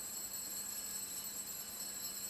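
Quiet room tone with a steady electrical hiss and faint hum from the sound system; nothing starts or stops.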